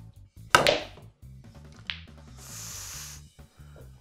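A snooker shot: a sharp clack of the cue tip striking the cue ball about half a second in, then a lighter click of snooker balls colliding about two seconds in, over faint background music.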